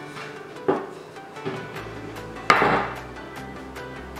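Background music plays throughout. Over it come two sharp wooden knocks, a lighter one near the start and a louder one about halfway through: a wooden rolling pin knocking on a wooden table as dough is rolled into a small disc.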